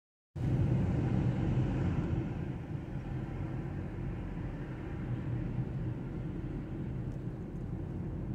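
Steady low rumble of engine and tyre noise heard from inside a car's cabin as it drives along a city street; it cuts in just after the start, a little louder for the first two seconds, then settles.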